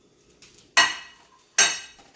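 A ceramic plate set down on a kitchen countertop: two sharp clacks a little under a second apart, each with a short ring.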